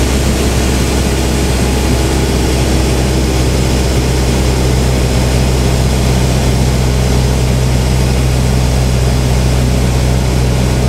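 Light propeller aircraft's engine and propeller running steadily on approach to land, an even, loud drone heard from on board.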